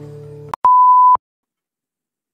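The last acoustic guitar chord dies away and is cut off by a click, followed by a single steady beep about half a second long, then silence.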